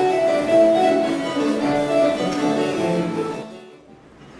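Baroque ensemble of violin, recorders, viola da gamba and harpsichord playing an English country dance tune in 1718 style, breaking off near the end.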